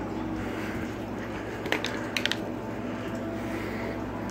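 Plastic water bottle being handled and squeezed, giving a few short crackles of plastic about two seconds in over a steady low background hum.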